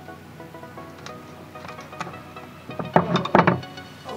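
Background music throughout; about three seconds in, a quick cluster of loud snips and crackles as scissors cut through and pull apart a steel wool scouring pad, with fainter snips before it.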